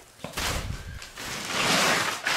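Rustling, scraping noise in two stretches, the second louder and longer.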